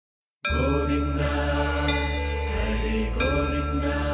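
Devotional intro music: a chanted mantra over a steady low drone, starting about half a second in.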